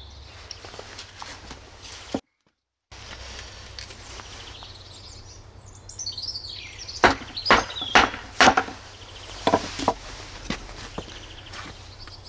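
A small hatchet being driven into a lime-wood log by knocking its back with a block of wood: a run of about seven sharp wooden knocks in the second half, with birds chirping just before them. The sound cuts out briefly about two seconds in.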